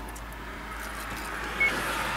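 Road traffic noise: a vehicle passing, its sound swelling in the second half, with a brief high beep about a second and a half in.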